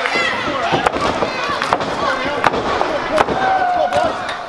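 Sharp slaps of hand strikes landing on a wrestler's body in the ring corner, about five cracks at irregular spacing, over shouting from the crowd.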